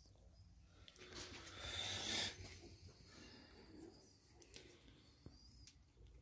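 Faint handling noise at a workbench: a soft rustling hiss for about a second and a half from about a second in, then a few faint clicks.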